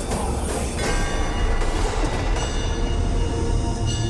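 Dramatic film background music: bell-like ringing tones over a deep low drone. The first second is a dense, noisy swell that gives way to the sustained ringing tones.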